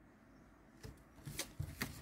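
Tarot cards being handled on a wooden table: near silence for the first second, then a few quick flicks and slides of card against card.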